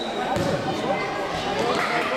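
Players and spectators shouting and calling over each other during a futsal game, with one thud of the futsal ball being kicked or bouncing off the court about half a second in.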